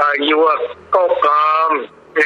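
Speech only: a voice speaking in a radio news broadcast.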